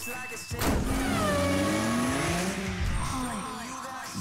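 Sound effects of a TV channel promo: a sharp hit about half a second in, followed by several gliding tones that swoop down and back up over the next two seconds.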